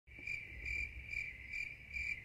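Cricket chirping: a high, pulsing chirp repeated about twice a second.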